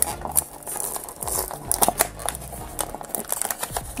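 Small cardboard blind box being torn open by hand, the paperboard crackling and ripping in a run of sharp, irregular crackles.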